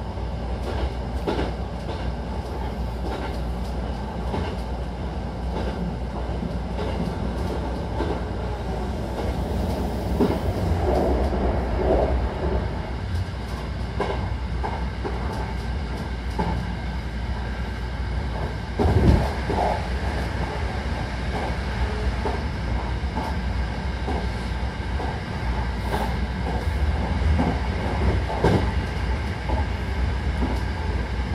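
Hankyu Takarazuka Line train running, heard from inside the car: a steady low rumble with frequent short clicks of the wheels over the track, and one louder knock about two-thirds of the way through.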